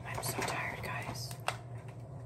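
A woman whispering softly, followed by a single sharp click about one and a half seconds in, over a steady low hum.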